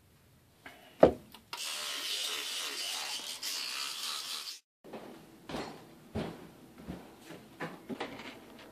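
A thump about a second in, then a steady hiss of tap water running at a bathroom sink during tooth brushing, which cuts off suddenly. After it comes a run of irregular soft knocks and rubs.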